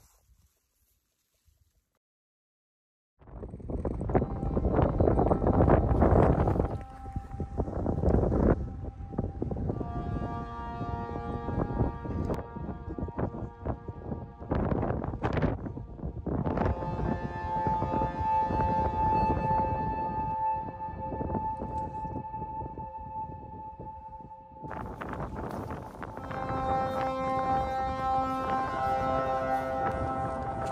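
After about three seconds of near silence, strong wind buffets the microphone. From about ten seconds in, background music with long held notes plays, with the wind noise still running beneath it.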